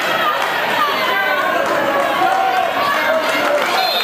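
Crowd of spectators in a gym talking and calling out, many voices overlapping at a steady level.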